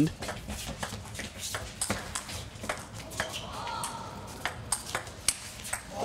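Table tennis ball being struck back and forth in a rally: a quick series of sharp clicks as it hits the rackets and bounces on the table.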